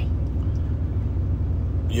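Steady low rumble of a running vehicle, heard from inside its cab.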